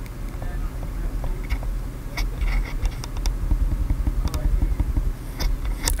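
Loose gain knob on top of an NZXT Capsule condenser microphone being turned by hand and picked up through the mic itself at high gain: scattered small clicks and rattles as the knob wobbles, over a low rumble.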